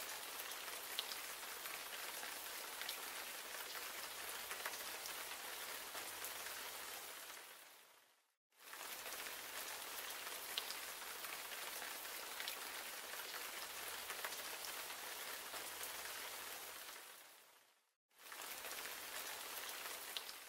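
Quiet, steady rain sound with a few scattered drop ticks. It fades out to silence and back in twice, at roughly nine-second intervals, like a looped ambience track.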